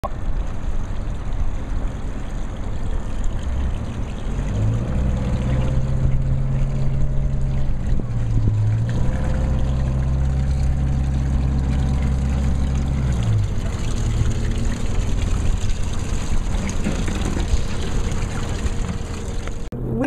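Boat engine running as the work boat passes close, a steady low hum that comes in about five seconds in, wavers briefly near the middle and falls away around thirteen seconds, over continuous background noise.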